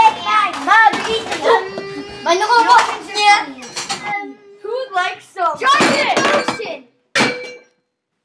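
Children shrieking and exclaiming excitedly, then a single sharp clink with a short ring about seven seconds in: a glass hitting something without breaking.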